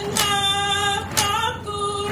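A woman singing an Indigenous song in long, steady held notes, phrase by phrase, with a sharp beat about once a second.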